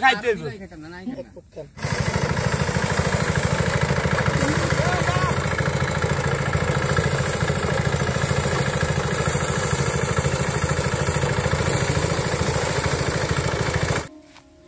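Motorized paddy thresher running steadily with a fast, even pulsing as bundles of harvested rice stalks are fed into it. It starts abruptly about two seconds in, after a few words of men's talk.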